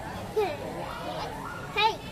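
Background chatter of children's and adults' voices, with a child's short high-pitched call near the end.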